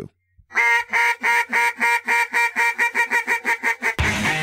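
Duck quacking in a fast, even string of short calls, about six a second, starting about half a second in after a brief silence.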